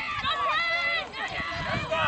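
Several people shouting and calling out over one another at a rugby match, in high, raised voices with no clear words.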